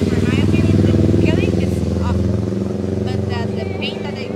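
A motor vehicle's engine running low and steady on the street close by, swelling and then slowly fading as it passes.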